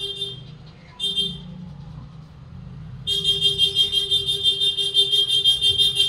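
A loud electronic warning tone at one steady pitch with a fast buzzing pulse: a short burst at the start, another about a second in, then sounding without a break from about three seconds in.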